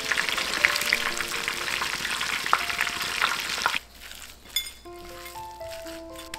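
Breaded chicken nuggets deep-frying in hot oil: a dense crackling sizzle with sharp pops, which cuts off suddenly about four seconds in.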